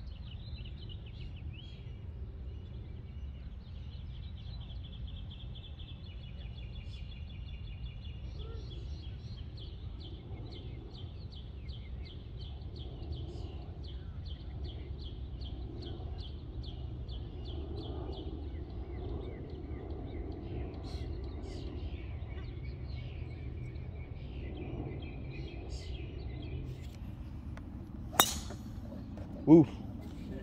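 Open-air ambience with a steady low rumble and a bird calling in rapid repeated chirps, with faint voices. Near the end a golf club strikes a ball off the tee in a single sharp crack, followed a second later by an 'ooh'.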